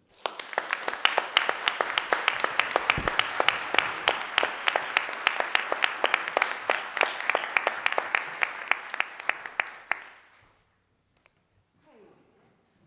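Audience applauding, a dense run of clapping with a few sharp claps close to the microphone standing out; it dies away about ten seconds in.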